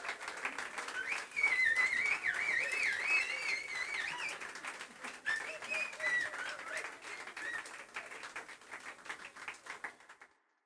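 Audience clapping, with whistles swooping and wavering over the applause in its first half. The applause thins out and fades toward the end.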